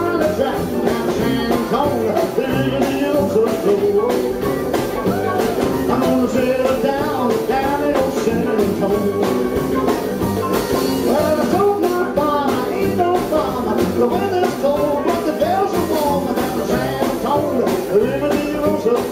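Live rockabilly band playing: electric guitar, acoustic guitar, upright bass and a drum kit, with a man singing lead.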